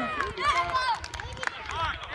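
Indistinct calls and voices of players and spectators at an outdoor youth football match, in short bursts about half a second in and again near the end, with a few faint light knocks.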